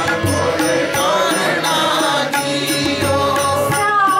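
Gurbani kirtan: a woman sings a devotional hymn to a steady accompaniment, with tabla strokes running through it.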